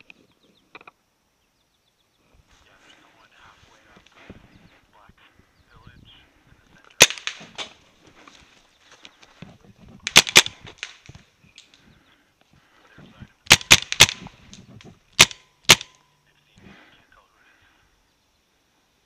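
Paintball markers firing close by in short groups: a single shot about seven seconds in, then a pair, a quick run of three, and two more near the end. Faint rustling of movement between the shots.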